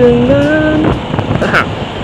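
Wind rushing over the microphone together with a Honda motor scooter's engine and road noise while riding, as a steady rough rush. A man's voice holds a long vowel over it for about the first second.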